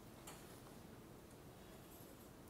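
Near silence: lecture-hall room tone, with a faint click about a quarter second in.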